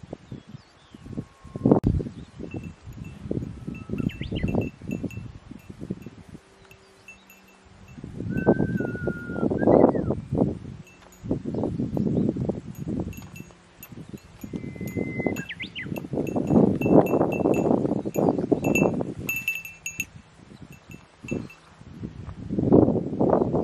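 Wind gusting over the microphone in irregular surges, with small high tinkling ticks and a few short whistled calls.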